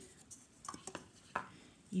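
A few light clicks and taps of plastic being handled on a tabletop, as a plastic lid is set down and a plastic cup picked up.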